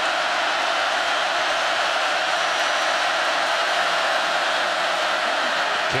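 Large football stadium crowd making a steady, loud wall of noise through a third-down play.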